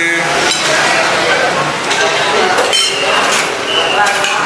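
Metal forks and spoons clinking against ceramic plates and bowls as people eat, a few light clinks heard over a busy dining-room background.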